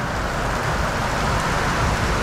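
Steady hiss of heavy rain falling, with a low rumble underneath.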